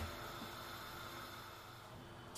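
A break in the background pop song: its last notes fade away into faint hiss before the music comes back in.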